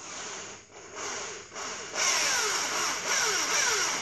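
Electric drill boring a 6 mm hole into a VW engine case's oil gallery plug to extract it, run slowly. It starts in short bursts, then runs steadily and louder from about two seconds in.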